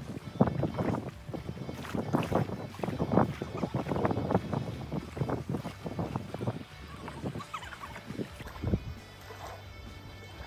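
Wind gusting unevenly across the microphone, easing off after about seven seconds.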